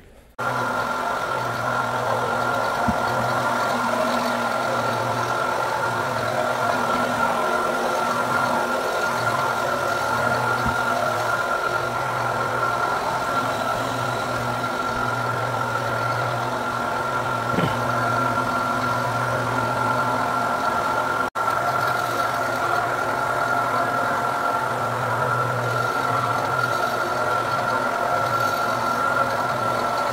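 Floor buffer screening a Brazilian cherry hardwood floor before a recoat: a steady motor hum with a constant high whine, its dust-collection hose attached.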